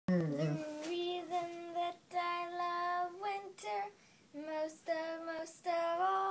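A young girl singing unaccompanied, holding long notes in short phrases, with a brief pause about four seconds in.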